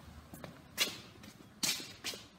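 Two short, sharp scuffs of shoes on a concrete floor as someone walks, the second about a second after the first, over a few faint ticks.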